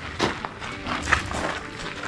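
Quiet background music, with two short noisy bursts, one just after the start and one about a second in.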